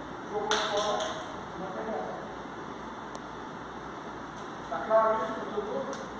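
A man's voice in a large hall, speaking indistinctly in short phrases: one about half a second in and another near the end.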